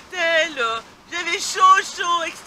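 A woman's voice, speaking or laughing, in two stretches with a short pause about a second in.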